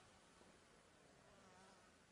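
Near silence: faint steady background hiss, with a faint wavering hum in the second half.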